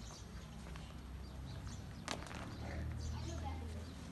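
Faint outdoor chatter of distant voices over a low rumble that swells in the second half, with a single sharp click about two seconds in.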